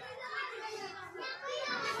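Faint voices of children talking and playing in the background.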